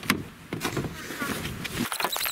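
Clicks and rustling of a camera being handled and moved inside a car.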